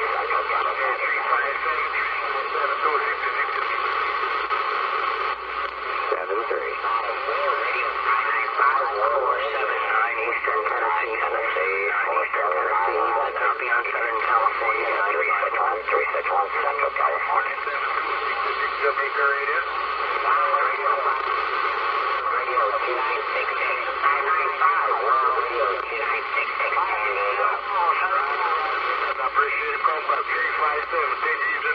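Single-sideband voice traffic on a Uniden Bearcat 980SSB CB radio tuned to channel 38 LSB (27.385 MHz): distant stations talking without pause over band noise, thin and narrow-sounding through the radio's speaker, with the words hard to make out.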